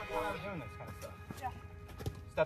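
Brief bits of a voice talking over the fading tail of background music, with a couple of faint clicks.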